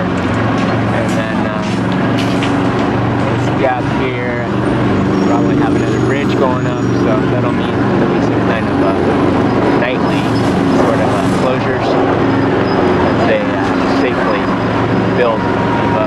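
Road traffic at an airport terminal curbside: vehicle engines running steadily, with indistinct voices mixed in.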